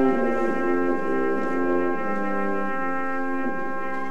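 Amateur wind band of brass and woodwinds playing, a high note held over lower parts that move from note to note about every half second.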